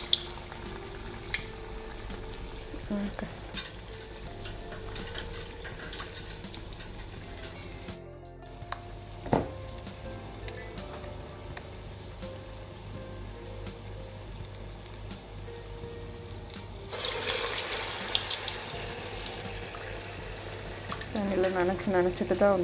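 Urad dal vada batter frying in hot oil in an iron kadai, a quiet steady sizzle over a low hum. About three-quarters of the way in the sizzle swells louder and crackly for a few seconds.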